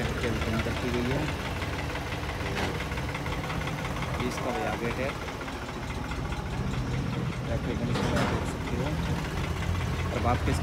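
A tractor's diesel engine idling steadily, a low, even rumble.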